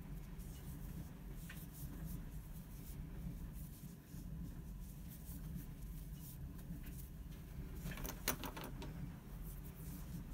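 Faint rustle of yarn and a crochet hook working stitches, over a low steady hum, with a quick run of small clicks about eight seconds in.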